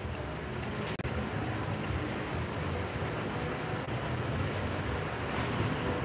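Steady rushing background noise, with a brief click about a second in.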